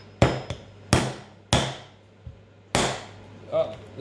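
A metal cross wrench used as a hammer strikes down sharply to drive a soldered EC5 bullet pin into its plastic connector housing, which is clamped in locking pliers. There are four main strikes, spaced unevenly over about three seconds, with lighter taps between them.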